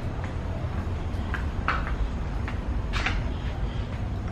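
Footsteps on a concrete walkway and a few sharp clicks and knocks from a glass entrance door being pushed open, the loudest knock about three seconds in. A steady low rumble runs underneath.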